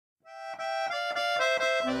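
Hohner Ventura IV 120 piano accordion playing a melody of short notes on the treble keys, starting about a quarter second in. A bass note joins near the end.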